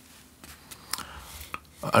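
Quiet room tone with a few faint, light clicks spread through the pause, then a man starts speaking near the end.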